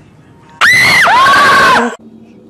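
A person screaming in fright, loud and high-pitched, starting just over half a second in. The scream is held for about a second, with a sharp drop in pitch midway before it carries on lower, and it cuts off abruptly near the end.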